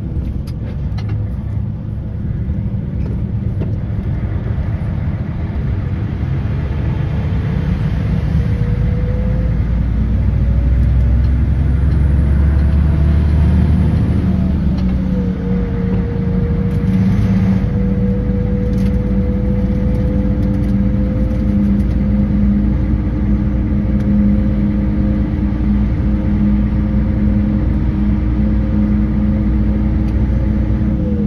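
Concrete mixer truck's diesel engine and road noise heard from inside the cab while driving. Its pitch climbs for several seconds, drops sharply about halfway through as the truck shifts up, then rises slowly again as it gathers speed.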